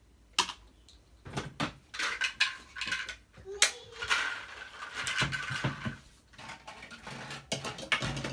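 Plastic toy dishes and plates clattering and knocking in a string of irregular sharp clicks as a child handles them at a toy kitchen.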